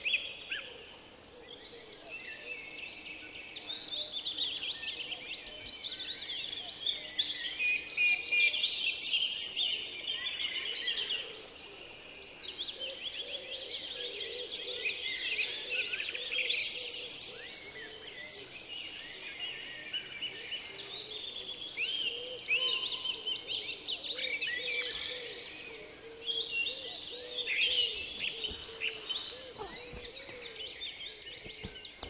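Several songbirds singing at once in a forest, a dense chorus of chirps, quick trills and rapidly repeated high phrases that swells and fades in waves.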